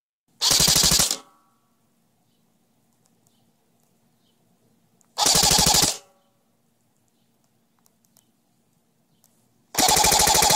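Custom KWA SR10 airsoft electric gun, powered by a 7.4 V LiPo battery, firing three short full-auto bursts of 0.20 g BBs through a chronograph at about thirteen rounds a second. Each burst lasts under a second, and the third begins near the end.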